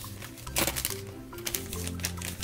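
Foil blind-bag wrapper crinkling and crackling as it is pulled open by hand, in a few sharp crackles, the strongest about half a second in, over background music.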